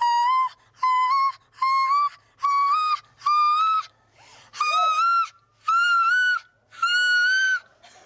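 Stainless steel stovetop kettle whistling in short repeated blasts, about one a second, as the water boils. Its pitch climbs steadily higher, with a brief fainter hiss of steam between blasts about four seconds in.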